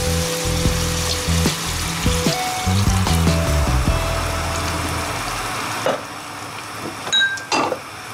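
Milk poured into a hot pan of frying meat and vegetables, hissing and bubbling as it hits the food, over background music; the hiss dies down about six seconds in.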